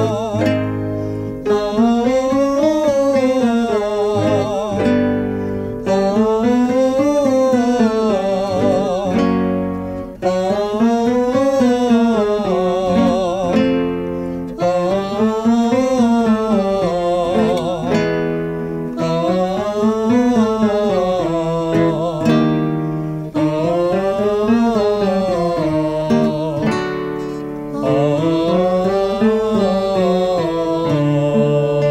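Vocal warm-up exercise: a man and a woman singing short scale phrases that rise and fall, one after another at changing pitches, accompanied by a classical guitar and a digital piano.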